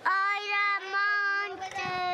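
A toddler's voice holding one long, nearly steady sung note, close to the microphone.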